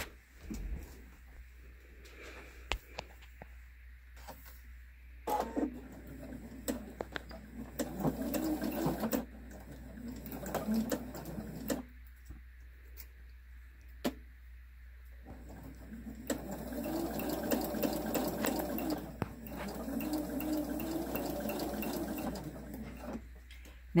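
Husqvarna Viking computerised sewing machine stitching in several runs of a few seconds each, speeding up and slowing down, with short pauses between them. The longest run comes near the end, and light clicks fall in the gaps.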